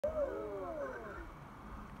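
A swirly electronic sound effect of several overlapping tones that glide downward in pitch, fading out before the end. It plays over a sparkling tummy-screen transition on a children's TV programme, heard through the TV's speaker.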